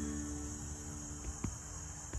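A steady, high-pitched chorus of insects trilling, with a faint soft tick about one and a half seconds in.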